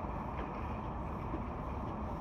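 Outdoor city street background noise: a steady low rumble, like distant traffic, with no distinct events.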